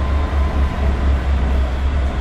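Inside a moving underground train car: a steady, loud low rumble of the running train with rolling noise and a faint steady whine above it. It was recorded binaurally through in-ear headset microphones.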